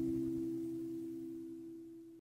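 The last chord of the closing music, several steady notes ringing out and fading away gradually.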